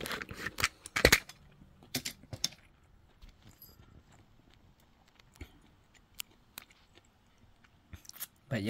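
Handling noise from the camera being picked up and moved closer: a cluster of sharp clicks and light metallic rattles in the first two and a half seconds, the loudest about a second in, then a few isolated ticks over near-quiet.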